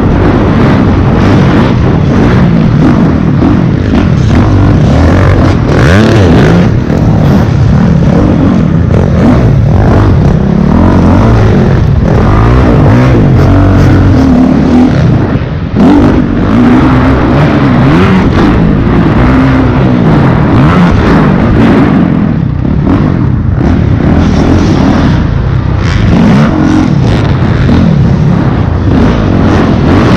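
Dirt bike engine heard close up from on board, revving hard and falling back again and again as the rider works the throttle around a supercross track, with a brief drop in loudness about halfway through.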